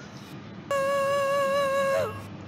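A man's singing voice holding one high note, about a C-sharp, steady for over a second from about two-thirds of a second in. It breaks slightly as it ends, with a little crack at the end, on a note at the top of the singer's new range.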